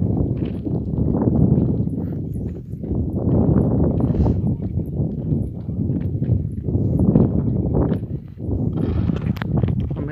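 Hoofbeats of a pair of racing bullocks and their light cart running over ploughed ground, within a continuous low rumbling noise that rises and falls.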